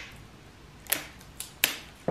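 Three short, sharp crackles from sticky tape and gift wrap being handled while wrapping a present: one about a second in, two close together near the end.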